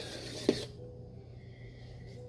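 Wine bottle and glass being handled: a short rasping hiss, then a light knock about half a second in, then quiet room sound.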